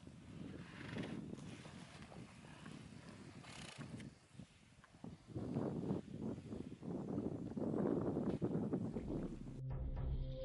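A pod of hippos grunting, fainter at first and louder and more continuous in the second half. Music comes in just before the end.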